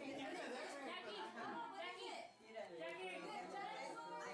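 Faint, indistinct chatter of several people talking at once in a room, with a brief lull about halfway through.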